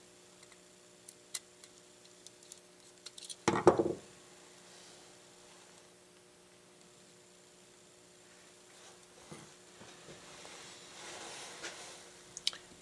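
Small ticks and clicks of a screwdriver turning the terminal screws on a plastic extension-cord plug, then one brief louder clatter about three and a half seconds in. After that, only a faint hum and the quiet handling of the plug and wires.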